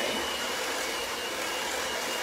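Electric mixer whipping heavy cream with lemon juice, running steadily with a thin high whine.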